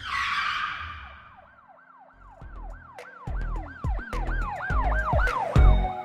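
Produced logo-intro sound effect: a whoosh, then a siren-like wail of repeated rise-and-fall sweeps, about three a second. Under the wail, deep bass hits build louder and end in a heavy bass hit near the end.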